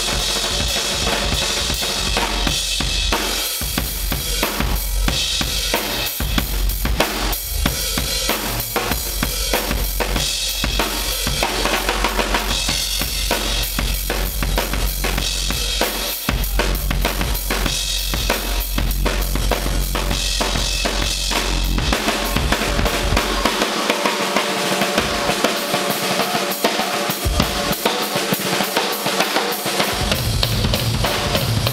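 Drum kit solo played live: fast, dense strokes across the snare, toms, bass drum and cymbals. Over the last several seconds the bass drum drops out at times and the cymbals carry the sound.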